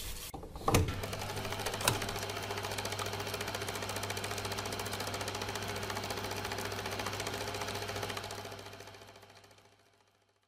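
Film projector running: a rapid, even mechanical clatter of the film advancing over a steady low motor hum, with a couple of sharp clicks as it starts. It fades away near the end.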